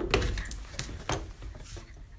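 A few short knocks and scuffs, the strongest at the very start, as a Labrador with a long stick held crosswise in its mouth hops at a doorway.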